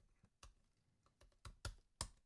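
Faint keystrokes on a computer keyboard, about five scattered clicks, as a terminal command is typed out. The last and loudest clicks near the end come as the command is entered.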